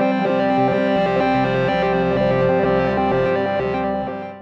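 Moog Subharmonicon analog synthesizer playing a steady drone over a stepping sequence of low bass notes; the sound starts to fade out right at the end.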